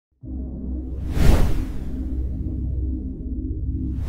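Cinematic intro sting: a deep, steady droning bass with sustained low tones, and a loud whoosh swelling up about a second in.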